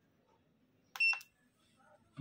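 A portable Leeb hardness tester gives one short, high electronic beep about a second in as its backlight key is pressed, with a faint key click at the start.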